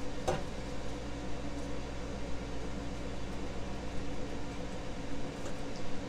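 Steady hum of the air fryer's fan running, with one light click of metal tongs against the steel basket about a third of a second in.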